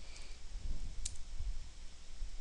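A single sharp click about a second in, with a fainter tick near the start, over an uneven low rumble close to the microphone.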